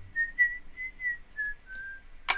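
Someone whistling a slow tune as film music: a single pure tone moving through a few held notes, stepping down a little near the end.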